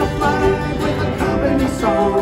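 Acoustic folk band playing an instrumental passage of a song: strummed acoustic guitar with bowed cello and fiddle.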